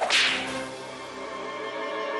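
A sudden swishing whoosh sound effect that fades within about half a second, laid over sustained background music.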